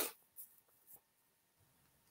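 Near silence: faint room tone, after a short breathy noise that fades out right at the start, with two tiny ticks in the first second.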